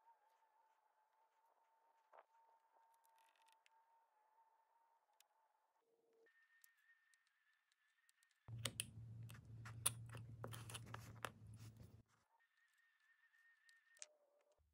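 Craft knife cutting and scraping through a thin piece of wood: a run of crackling clicks over a low hum lasting about three and a half seconds midway. The rest is near silence with only a faint steady whine.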